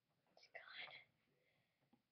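A brief, faint whisper about half a second in, otherwise near silence.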